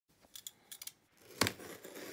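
Faint small clicks as a utility knife and a taped cardboard shipping box are handled, then a sharper click about one and a half seconds in, followed by a faint scraping as the knife starts on the packing tape.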